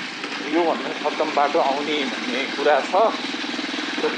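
Short snatches of speech over a steady idling motorcycle engine.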